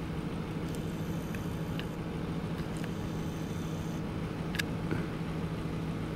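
Steady low hum of an idling vehicle engine, with a faint click about four and a half seconds in.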